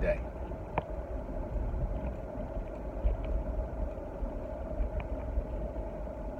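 Steady low rumble of a running car heard from inside its cabin, with a constant hum over it and a couple of faint ticks.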